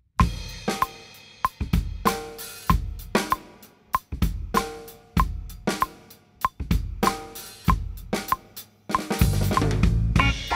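Acoustic drum kit played in a steady groove of kick drum, snare, hi-hat and cymbal strokes. About nine seconds in the playing turns denser and louder.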